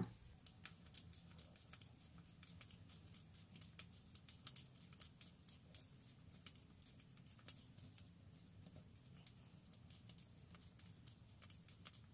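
Faint, irregular clicking of metal circular knitting needles as a run of knit stitches is worked, several soft ticks a second.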